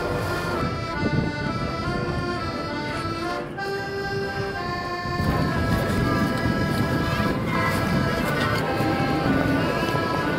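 Hohner Corona diatonic button accordion playing a waltz melody in held, reedy notes. About halfway through, a rumble of outdoor noise rises under the music.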